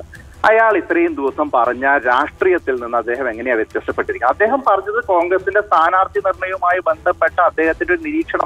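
Speech only: a voice talking continuously over a telephone line, sounding narrow and thin.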